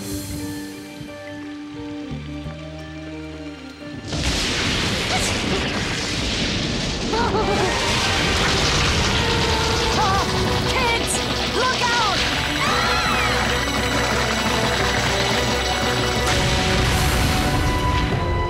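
Orchestral cartoon score, then from about four seconds in a loud, steady rush of rainstorm sound effects that carries on with the music underneath.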